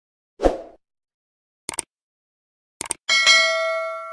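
Sound effects of a subscribe-button animation: a short thump, then two sharp clicks about a second apart, then a bright bell-like ding whose ringing tones fade out slowly.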